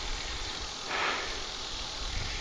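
Low wind rumble on the microphone with faint hiss, and a short breath about a second in.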